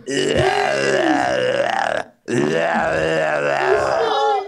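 A person's voice making two long, wavering, guttural groan-like sounds, each lasting about two seconds, with a brief break between them.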